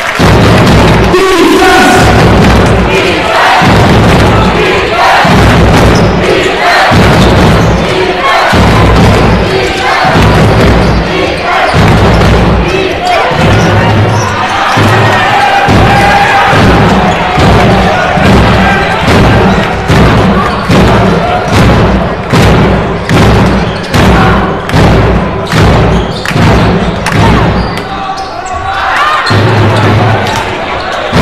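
Loud basketball arena sound during live play: crowd noise and music with a pounding beat, about two beats a second in the second half, over basketball bounces and thuds on the court.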